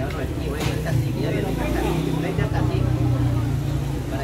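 A motor vehicle engine running steadily close by, its low hum shifting slightly a little past two seconds in, under the chatter of voices in the street.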